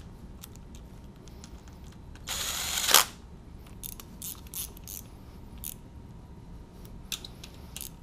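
A cordless drill/driver runs once for under a second, about two and a half seconds in, driving a bolt into the engine's timing cover and stopping with a sharp click. Light metallic clicks of bolts and hand tools being handled follow.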